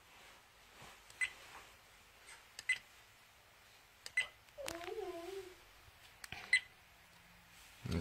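XuanPad dash cam button beeps: four short, high electronic beeps spaced about a second and a half apart, each with a small click of the button being pressed, as its menu buttons are worked to open recorded videos.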